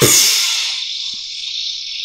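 Anime sound effects: a sudden loud whoosh that sweeps down in pitch as a kick lands, over a steady high-pitched electronic buzz.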